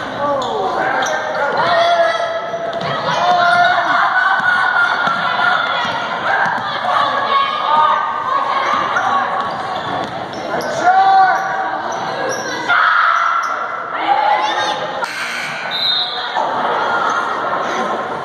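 A basketball bouncing on a hardwood gym floor during play, among players' and spectators' shouts, all echoing in a large gymnasium.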